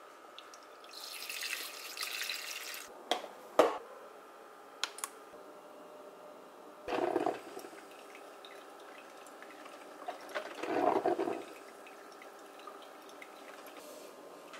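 Coffee being poured from a drip coffee maker's glass carafe, a couple of sharp glass clinks as the carafe is handled, then two short gurgles.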